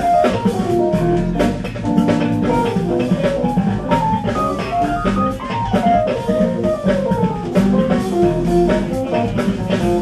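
Live smooth jazz trio of electric bass, keyboards and drums playing an instrumental, with quick melodic runs of notes over a steady drum groove.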